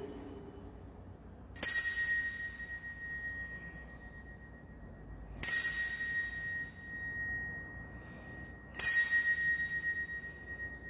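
Altar bell rung three times at the consecration, the signal for the elevation of the host. Each stroke rings out clearly and dies away over a couple of seconds, about three and a half seconds apart.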